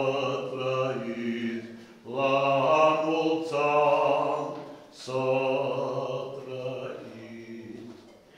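A man chanting an Orthodox wedding-service prayer, one voice holding long, steady notes. The phrases break briefly about two and five seconds in.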